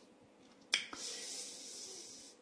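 A single sharp mouth click, like a tongue click, about three-quarters of a second in, followed by a soft breathy hiss of about a second and a half.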